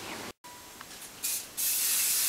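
Hairspray hissing onto hair from a spray can: a short burst about a second in, then a longer steady spray near the end.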